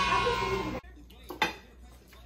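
Loud voices that cut off abruptly less than a second in, followed by quiet room tone and a short clink of cutlery against a plate about halfway through.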